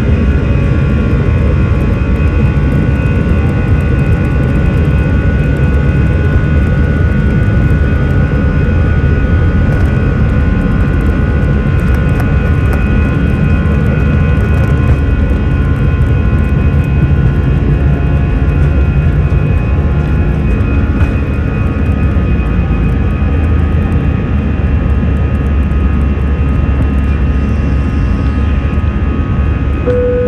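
Airbus A321 jet engines at takeoff thrust, heard from inside the cabin during the takeoff roll and climb-out: a loud, steady din of deep rumble with a steady whine on top.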